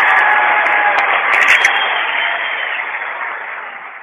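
Audience applause right after a speech ends, dense and steady, fading out gradually over the last two seconds.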